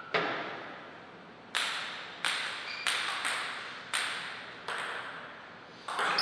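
A table tennis ball bouncing: about seven sharp clicks at uneven intervals of one second or less, each echoing briefly.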